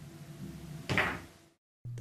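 Pool balls in play during a bank shot on a pool table: one knock of a ball about a second in, and then the sound cuts off suddenly.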